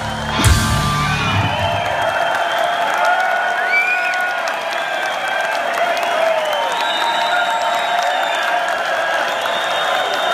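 Rock band's closing hit about half a second in, a drum and cymbal crash with the full band, ringing out and dying away over the next second or so. Then a concert audience cheers, whoops and whistles.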